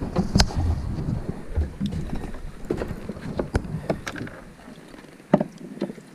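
Scattered sharp knocks and taps as a freshly caught red snapper is unhooked and handled on a fiberglass boat deck, over a low rumble of wind on the microphone that fades near the end.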